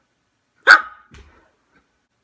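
A dog barks once, short and loud, about two-thirds of a second in, followed by a fainter short sound half a second later.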